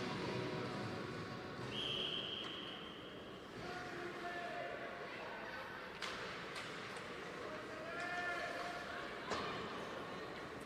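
Ice hockey rink sound: a referee's whistle blown once, a steady high tone about a second and a half long, near the start. After it come distant player voices and a few sharp clicks of sticks and puck on the ice.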